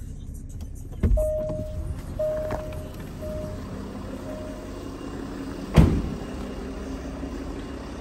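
Range Rover Sport's driver door opening with a knock, then the car's warning chime sounding four times, each fainter, and the door shutting with a loud thud just before six seconds in, with the engine idling steadily underneath.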